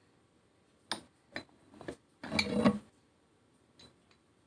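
Metal plate-loaded dumbbells clinking as they are picked up and lifted: three sharp clinks a second or so in, a louder, longer burst of sound around the middle, and one faint click near the end.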